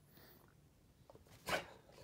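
A dog gives one short, sharp vocal sound about one and a half seconds in.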